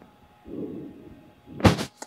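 Multimeter probe tips being set against the fuse blades in a plastic fuse box. A soft low rustle about halfway is followed by two sharp clicks close together near the end.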